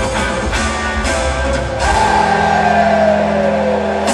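Live rock band playing, heard from the crowd in an arena: electric guitar, drums and keyboards. About halfway through, a held note slides slowly down in pitch over sustained low notes.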